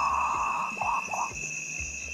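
Northern potoo giving its guttural call: one long harsh note, then two short ones about a second in.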